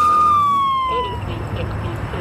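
Police siren wail held on one high note, then winding down in pitch and fading out about a second in. A low engine rumble follows.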